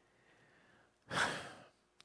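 A single audible breath from a man about a second in, lasting about half a second.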